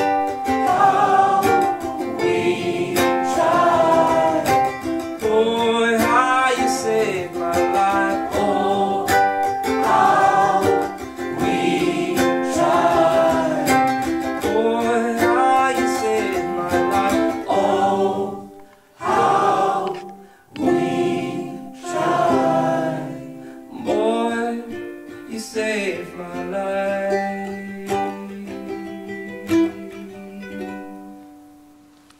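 Live acoustic song: strummed ukulele with a man singing. The music drops out briefly twice past the middle, then winds down with held notes and fades near the end.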